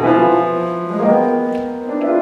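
Solo acoustic piano playing, with new chords and notes struck about every half second and left to ring.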